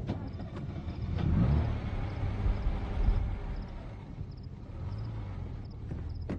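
A motor vehicle driving past, its engine rising in pitch and loudest around a second and a half in, then fading away.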